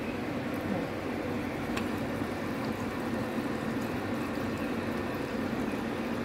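Strips of beef and onion cooking in a pot on the stove: a steady sizzling hiss, with one faint click a little under two seconds in.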